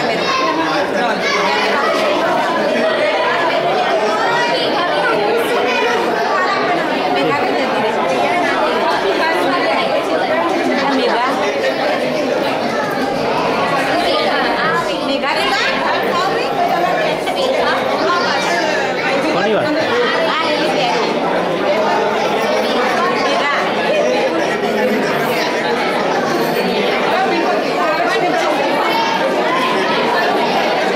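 Many people talking at once: steady, overlapping chatter of a gathered crowd in a large room.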